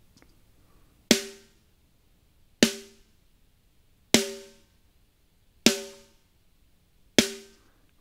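Soloed snare drum track playing back: five dry snare hits about one and a half seconds apart, each dying away quickly. No reverb is heard on them, because the reverb return was not solo-safed.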